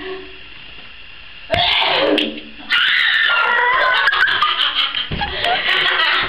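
Women laughing loudly, beginning with a short burst about a second and a half in and breaking into sustained high-pitched laughter about a second later.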